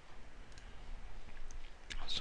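A computer mouse button clicking once, sharply, near the end, over faint steady background hiss.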